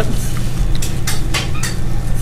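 Steady low background hum with about half a dozen short, sharp clicks scattered through it.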